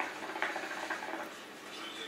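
A hookah's water base bubbling as smoke is drawn through the hose: a quick, irregular gurgle for about the first second. A softer breathy exhale follows near the end.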